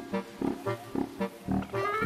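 Background music with several short calls from African elephants.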